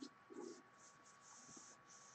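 Near silence: room tone with a faint steady high tone, a few faint short scratching sounds and one soft knock about half a second in.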